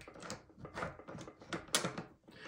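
Small steel parts of an ERA centre case's latch mechanism clicking as they are pushed by hand: a few light clicks, the sharpest near the end.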